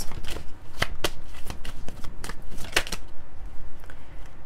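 A deck of tarot cards being shuffled by hand: a run of irregular card snaps and flicks that thins out near the end.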